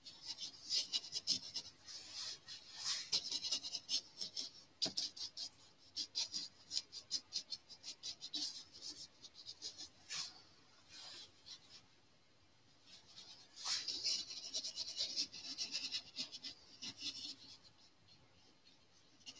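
Small paintbrush scratching and dabbing oil paint onto canvas in quick, short, repeated strokes, with a pause of about a second and a half past the middle while the brush is lifted.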